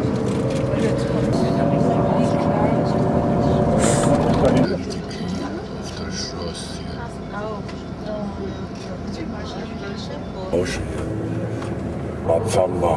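A coach's engine and road noise heard from inside the passenger cabin, with a steady drone for the first four to five seconds that drops away suddenly, leaving a quieter rumble. A sharp knock comes about four seconds in, and faint voices are heard under the rumble.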